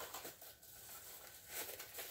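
Faint crinkling and rustling of plastic bubble wrap being handled, slightly louder near the end.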